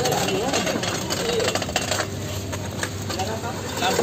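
Voices talking in the background over irregular clicks and rattles from a fire-gutted scooter being wheeled by hand, its charred loose parts knocking as it moves.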